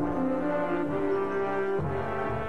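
Brass-led theme music playing slow, held chords that change about every second.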